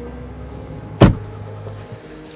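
A McLaren 650S Spider's dihedral door closing with one loud, heavy thud about a second in, over background music.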